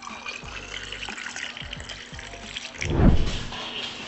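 Liquid poured from a glass carafe into a glass over ice, a steady splashing pour. A low thump about three seconds in.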